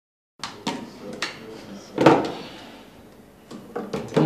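Dishes and serving ware being set down on a dining table: a run of knocks and clinks, the loudest about two seconds in, and two more just before the end. The first half second is silent.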